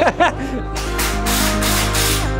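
Background music with held notes and a fast hissing percussion rhythm of about four strokes a second above them.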